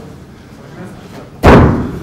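A single loud, sudden impact hit about one and a half seconds in, dying away with a reverberant tail over about half a second: an edited transition sound effect leading into a replay.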